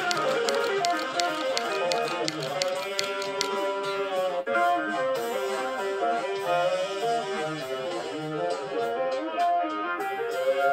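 A recorded band track with legato electric guitar lines, played back slowed down in a practice app's loop for transcribing, over a steady ticking beat.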